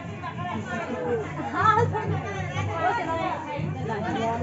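Several people chattering and talking over one another, the voices overlapping without a break.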